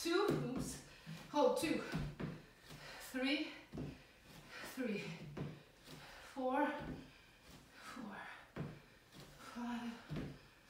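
A woman's short wordless vocal sounds of effort, one about every one and a half to two seconds, often falling in pitch, during a floor exercise.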